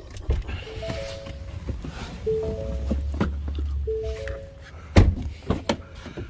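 Ford F-150 cabin warning chime, a short three-note tone repeated three times about a second and a half apart, then a loud thunk of a truck door near the end.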